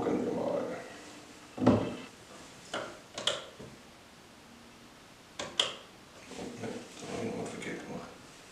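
A few sharp knocks and clicks on a wooden tabletop: a smartphone being set down, the loudest knock about a second and a half in, then a small IKEA plastic shortcut button being handled and pressed, with light clicks over the next few seconds.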